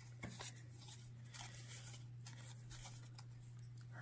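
Faint rustling and light clicks of cardboard baseball cards being slid and flipped through by hand, over a low steady hum.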